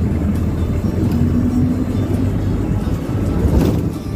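Steady low rumble of a moving road vehicle, with background music playing over it.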